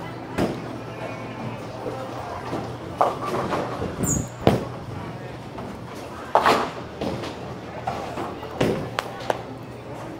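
Bowling alley ambience: a steady hum of the hall with indistinct background voices and music, broken by several short, sharp knocks and clatters from balls and pins on the lanes.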